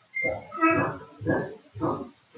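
Four short animal calls in quick succession, each a brief pitched cry, the second the longest and loudest.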